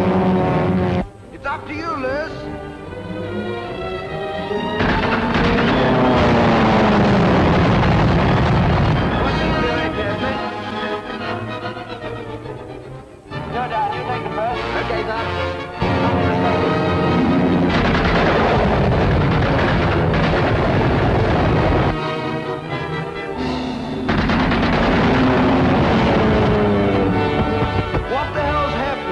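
Orchestral film score mixed with stretches of gunfire during an aerial attack on a flying boat. The gunfire comes in loud, noisy passages a few seconds long.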